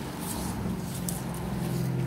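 Steady low mechanical hum of a motor or engine running, with a few faint rustles and clicks.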